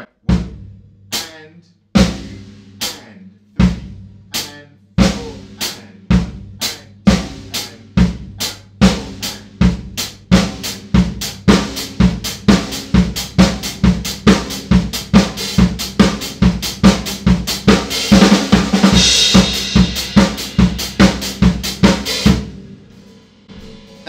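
Cambridge Drum Company maple drum kit playing a four-on-the-floor disco groove: bass drum on every beat, snare on two and four, hi-hat on the offbeats. It starts slowly, a stroke at a time, and speeds up into a steady fast groove, with a brighter cymbal wash for a couple of seconds near the end before it stops.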